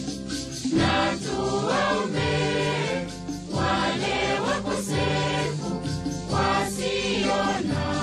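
Voices singing a Swahili Catholic hymn to the Virgin Mary over steady instrumental accompaniment, with a brief dip between phrases about three seconds in.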